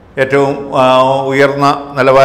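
A man speaking Malayalam in a drawn-out, evenly pitched delivery, starting a moment in.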